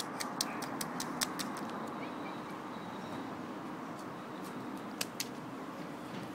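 Quick light taps and small splashes of a toddler's rubber wellington boots stepping in a shallow puddle on pavement, a rapid run of them in the first second and a half and a few more near the end, over steady faint outdoor background noise.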